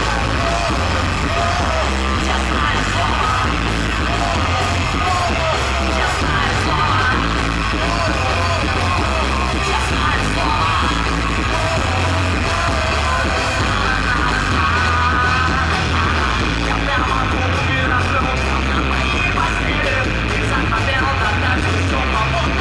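A live rock band playing loud, with electric guitar and heavy bass, and a male voice singing over it.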